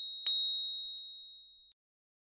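A high, bell-like ding sound effect from a subscribe-button animation. The ring of one ding is still fading at the start, a second ding strikes about a quarter second in, and it rings down steadily until it cuts off about a second and a half in.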